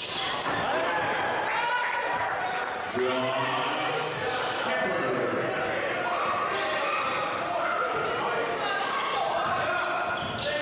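A basketball bouncing on a hardwood gym floor during live play, amid the many overlapping voices of the crowd and players in a gymnasium.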